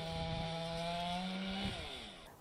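Chainsaw running steadily at high revs, its pitch dropping as it winds down near the end.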